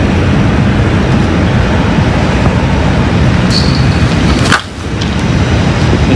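Wind buffeting the microphone: a loud, steady low rumble, broken by a single sharp click about four and a half seconds in.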